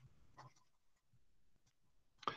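Near silence, with a few faint short strokes of a marker pen writing on paper.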